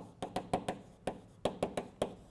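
Chalk writing on a blackboard: two quick runs of sharp taps as the letters are struck, the second run about a second and a half in.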